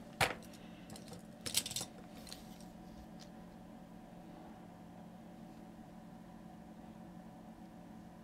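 A few light clicks and knocks from hands handling a plastic dinosaur figure on its painting handle: one sharp click right at the start and a short cluster about a second and a half in, then only a faint steady hum.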